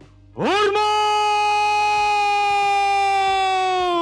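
A man's long, drawn-out shouted parade command, the "Hormaaat" of a salute order. It is held on one steady pitch for about three and a half seconds, rising at the start and dropping away at the end.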